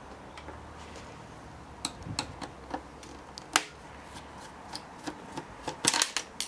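Scattered light clicks and taps of a screwdriver and hands handling an opened network switch's sheet-metal chassis and circuit board, irregular and sharpest about three and a half seconds in and again near the end. A steady low hum lies underneath.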